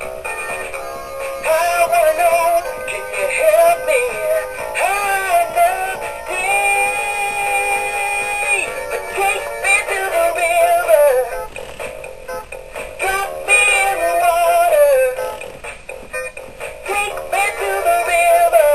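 Big Mouth Billy Bass animatronic singing fish playing its song through its small built-in speaker: a recorded male vocal with backing music, thin with almost no bass, holding one long note midway.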